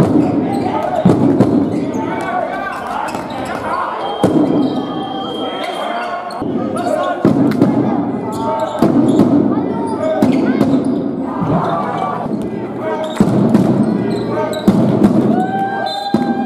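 Basketball being dribbled on a sports-hall floor amid live play, with players' and spectators' voices calling out throughout.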